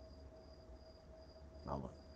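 Faint insect chirping: a high-pitched pulse repeating evenly about four times a second, over a faint steady hum.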